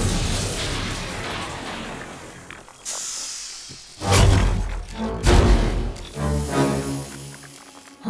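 Cartoon crash of breaking glass dying away over the first few seconds, then two heavy booming hits about four and five seconds in, followed by a few held music notes.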